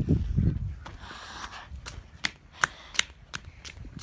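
A low rumble, then a run of short sharp clicks or taps, about two to three a second, growing more frequent in the second half.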